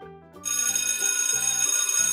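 Alarm-clock bell ringing sound effect, starting about half a second in and ringing steadily: the signal that the quiz countdown has run out. Light background children's music continues underneath.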